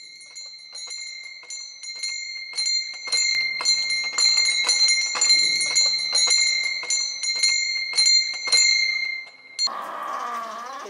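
Small brass bells hung on a cross-shaped wooden frame, shaken so they ring in a quick, uneven jingle over a steady ringing tone. The jingle grows louder after about three seconds and stops suddenly just before the end.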